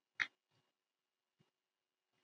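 Near silence with a few faint, short clicks, one slightly stronger just after the start.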